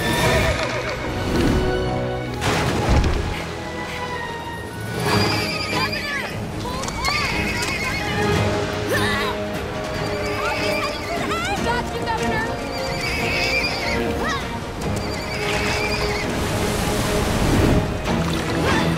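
Horses whinnying again and again in short calls that rise and fall, over orchestral background music. A louder hit comes about three seconds in, and a rushing haze like water builds near the end.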